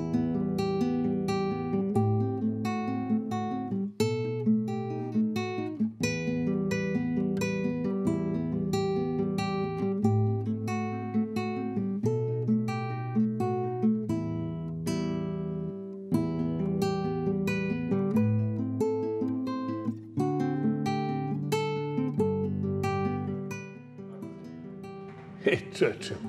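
Classical nylon-string guitar played fingerstyle: plucked notes in flowing patterns over held bass notes, growing softer near the end.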